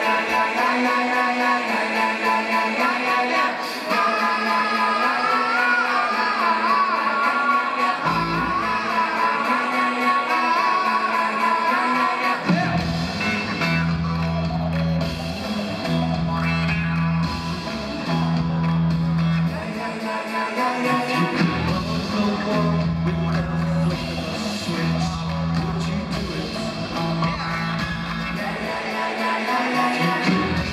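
Live rock band music with guitar and singing. For the first twelve seconds or so there is no bass; about twelve seconds in, a repeating low bass line joins.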